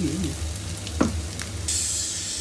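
Chopped onion and garlic sizzling in hot oil in a nonstick frying pan as they are stirred with a spatula. A single knock about a second in, and the sizzle turns louder and brighter near the end.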